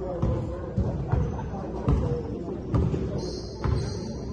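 Basketball dribbled on a hardwood gym court, one thump roughly every second, irregularly spaced, under people talking and calling out in the gym.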